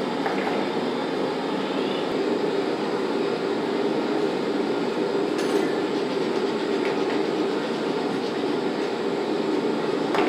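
A steady, even mechanical rumble that carries on unbroken through the whole stretch, with a few faint ticks.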